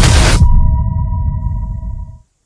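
Loud noise of explosions and gunfire from war footage cuts off sharply about half a second in. A broadcast news sound effect follows: a deep rumble under a steady electronic ping-like tone, fading away at the end.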